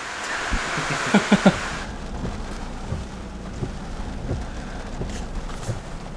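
Steady rain hiss with a short laugh about a second in. After about two seconds the hiss drops away and a low, even rumble carries on.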